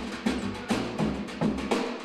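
Instrumental music with a steady beat: sharp drum and percussion hits several times a second over a low bass line.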